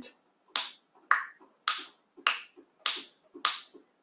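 Seven sharp, evenly spaced clicks, a little under two a second, counting off a few seconds of thinking time.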